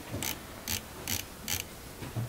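Four footsteps at a walking pace, about two a second.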